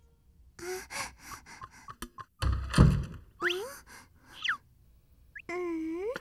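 Cartoon sound effects and a character's wordless voice sounds: a few light clicks, then a heavy thump a little before halfway, then two short gliding vocal sounds and a brief hummed note near the end.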